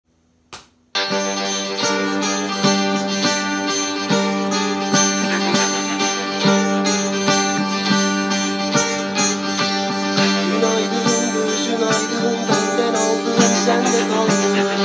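Electric guitar played along with a rock song's backing track, beginning about a second in after a short click. The music holds a sustained low tone under a steady beat.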